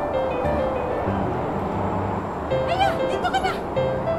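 Background music: held melody notes over a low bass line. In the second half comes a high, wavering line that rises and falls quickly for about a second.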